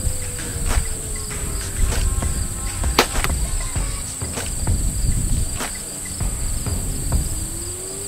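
Steady high chirring of field insects, with one sharp snap about three seconds in from a compound bow being shot, and scattered small clicks and rumbling handling noise from the camera mounted on the bow as it swings. A faint hum slowly falls in pitch during the first three seconds.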